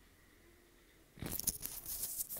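Hot oil sizzling and crackling around breaded bread pockets deep-frying in a pan, cutting in suddenly about a second in after near silence.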